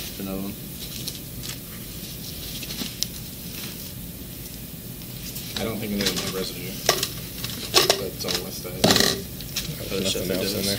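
Small objects handled and rustled on a desk, with a steady hiss and a few sharp clicks and knocks in the second half, under indistinct voices.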